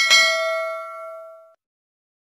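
Notification-bell 'ding' sound effect of a subscribe-button animation: a single bright bell strike that rings out and fades away over about a second and a half.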